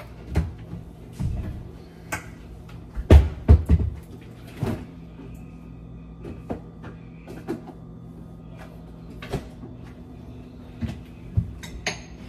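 Kitchen handling noises: knocks and clunks of things being set down and a fridge or cupboard door being worked, with a loud cluster of knocks about three seconds in and scattered lighter knocks after.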